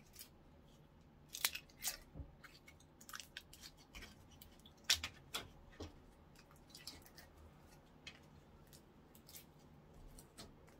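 Orange slime being squeezed out of a small plastic tub and pressed with the fingertips, making scattered small pops and clicks. The loudest snap comes about five seconds in.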